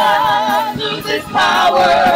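Gospel praise team of women's voices singing together in harmony through microphones, holding a long note with wide vibrato, breaking off briefly about a second in, then swelling into a new held note.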